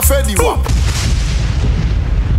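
Explosion sound effect dropped into a dancehall sound-system mix: the singing and bass break off about half a second in, and a blast of noise with deep low end follows, its hiss slowly fading.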